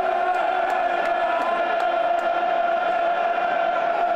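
Football stadium crowd chanting, many voices singing together on a steady held note over the general crowd noise.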